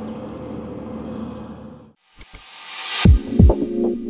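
Steady background noise that cuts off about two seconds in, then a news channel's logo sting: two ticks, a rising whoosh, two deep booms like a heartbeat, and a held electronic chord.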